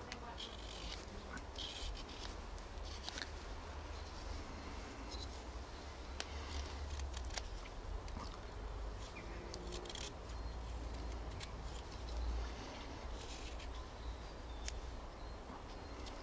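Whittling knife slicing shavings off a lime-wood blank: a run of short, irregular scraping cuts with the odd click. A low steady rumble lies underneath.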